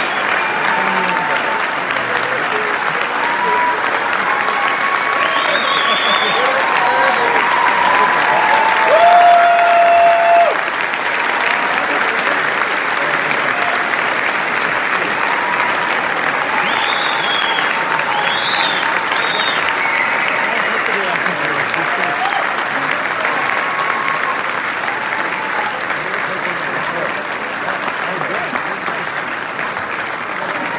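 Large concert-hall audience applauding steadily at the close of an orchestral performance, with a few voices calling out over the clapping. The applause drops a little in level about ten seconds in.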